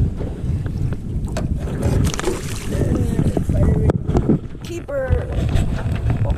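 Wind buffeting the microphone and water splashing as a fish is netted with a landing net beside a small boat. A few sharp knocks and splashes stand out.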